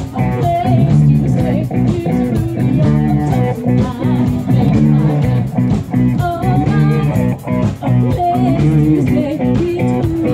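Loud live band music, with electric guitar and bass guitar playing continuously and a woman singing into a microphone.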